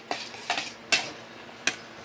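Metal spoons and forks clinking against ceramic plates and bowls while eating: four short separate clinks, the loudest about a second in.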